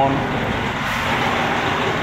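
A steady rushing noise, even and unbroken, with no distinct knocks or tones in it.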